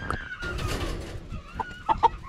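Gamefowl chickens clucking in the pens, with a few short clucks near the end and a brief rustling noise in the middle.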